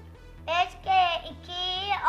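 Background children's music with a steady repeating beat. From about half a second in, a very high-pitched, cartoon-like voice chants a times-table line in a few drawn-out syllables.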